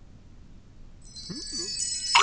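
A magic-sparkle chime sound effect: a bright, high shimmer of many ringing tones like wind chimes that sets in about a second in, marking a magical reappearance. A brief voice exclamation sounds beneath it.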